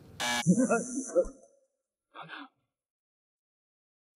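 A short, loud electronic buzz, then a man's brief laugh and voice, then dead silence.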